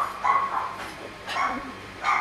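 A dog barking three short times, the last about a second and a half in.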